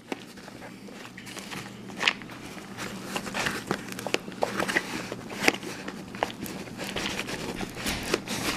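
Fabric rustling and scattered light clicks and knocks as a stub gauge is worked down into the large back pocket of a Veto TP-XL tool bag.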